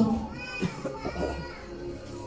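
Faint children's voices and chatter in the background over a low steady hum.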